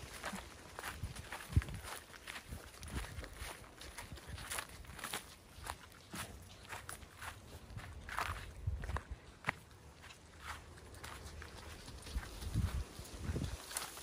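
Footsteps on a sandy trail strewn with dry grass and twigs, about two steps a second.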